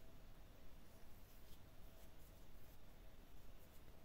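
Near silence: room tone with a faint steady hum, and a few faint soft ticks from yarn and a steel crochet hook being worked.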